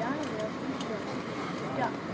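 Passengers' voices talking over the steady running noise of a moving Amtrak passenger coach rolling on the rails.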